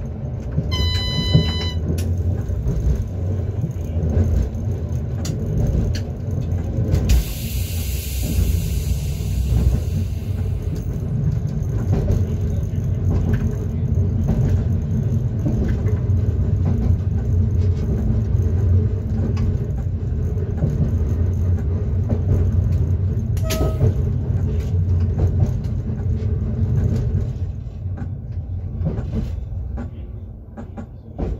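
Class 425.95 electric multiple unit of the Tatra electric railway running along the track, heard from inside the driver's cab: a steady low rumble of wheels and running gear. There is a short electronic beep about a second in and a burst of hiss about eight seconds in, and the rumble eases near the end as the unit slows for a stop.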